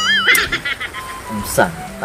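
A horse whinny: a high, quavering call at the start, breaking into a quick fluttering run that fades within about a second.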